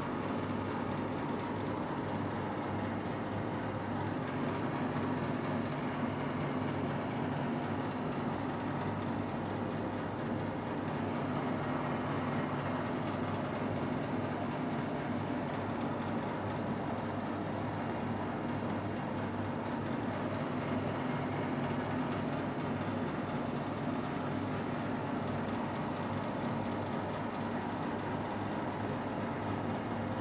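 Steady, even background hum and hiss of a room, unchanging, with no distinct events.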